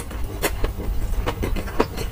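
Close-miked chewing of sauce-glazed Korean fried chicken, with a few short crunches and wet clicks scattered through it, over a steady low hum.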